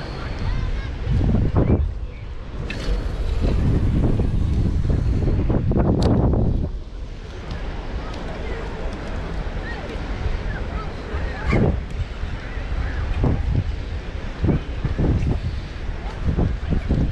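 Wind blowing on the microphone over the wash of the sea, heaviest in the first seven seconds and lighter after, with faint voices now and then.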